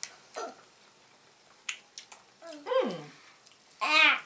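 A person chewing a soft gummy candy, with a few faint wet mouth clicks, then a short hum that falls in pitch about two and a half seconds in, and a voice starting just before the end.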